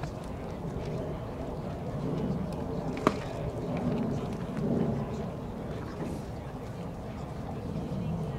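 Ballpark crowd chatter, with one sharp crack about three seconds in as a pitched baseball strikes.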